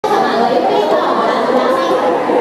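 Crowd of onlookers chattering, many voices overlapping at a steady level.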